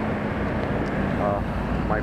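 Steady low engine rumble with a constant hum, from vehicles running nearby, under a few spoken words.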